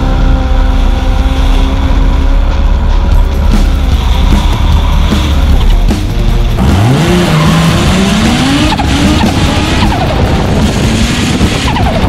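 Drift car engine at high revs with tyres skidding. In the second half the engine pitch climbs sharply, then rises and falls repeatedly as the throttle is worked.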